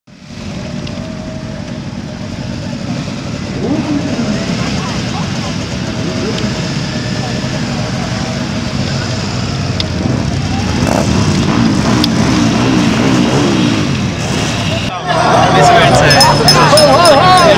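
A group of cruiser-style motorcycles riding slowly past, engines running with revs rising and falling now and then. About a second before the end the sound cuts abruptly to crowd voices.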